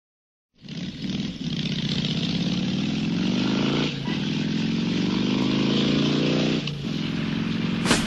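Motorcycle engine accelerating hard, starting suddenly about half a second in, its pitch climbing and then dropping briefly twice, about four and seven seconds in, as it shifts up through the gears.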